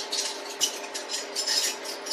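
Irregular light clinks and clatters of hard objects, several short bursts a second, over a steady low hum.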